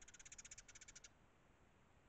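Eurasian tree sparrows giving a faint, rapid chattering call: two quick runs of pulses in the first second.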